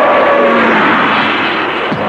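Loud, steady rushing noise with slowly falling tones running through it: a dramatic film sound effect.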